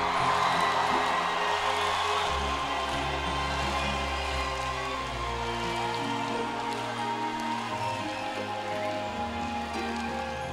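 Rock-festival crowd cheering and applauding, fading slowly, just after the band stops playing. Under it, sustained keyboard chords hold, changing every few seconds.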